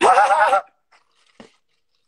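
A man's loud, high-pitched burst of laughter lasting about half a second, followed by quiet.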